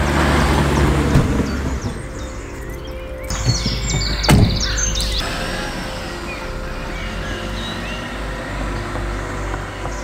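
Cars driving past on a road, with birds chirping and a single thump about four seconds in, over background music.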